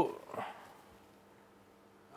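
The tail of a man's drawn-out spoken word, a faint murmur, then a pause of quiet room tone with a faint steady electrical hum.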